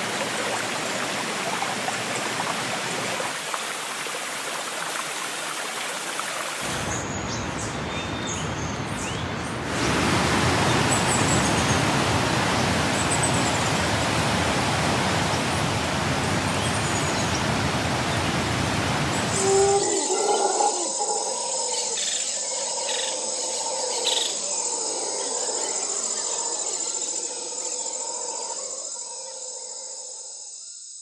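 Wind rushing over the microphone, growing louder and deeper for a stretch, then dropping away about two-thirds of the way in to leave birds calling in open scrubland.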